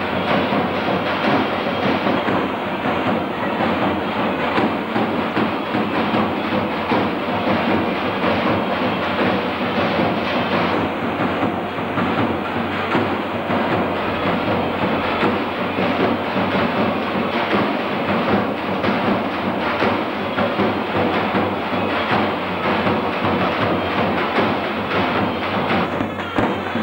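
Kurdish halay (govend) dance music, played loud without a break, with a drum keeping a fast, steady beat.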